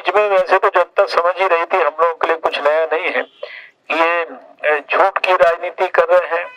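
Only speech: a man speaking Hindi into a handheld microphone, with short pauses between phrases.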